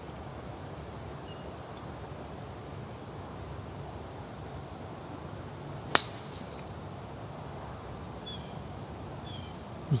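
A single sharp crack of a driver striking a golf ball off the tee, about six seconds in, over a steady outdoor background.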